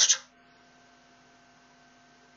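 The end of a spoken word, then a faint steady electrical hum with hiss from the recording chain.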